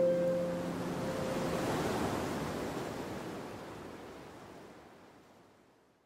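A soft, airy whoosh like wind or surf, used as an intro sound effect. It swells over the first couple of seconds and then slowly fades away, while the last harp note of the intro music dies out at the start.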